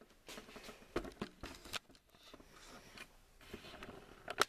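Handling noise from the camera being picked up and moved by hand: scattered light clicks and rustles, with a few sharper knocks about a second in.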